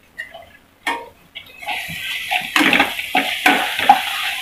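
Chopped onions and green chilli–garlic paste frying in oil in a kadhai. A sizzle starts about a second and a half in, and a metal slotted spoon stirs and scrapes the pan in several quick strokes.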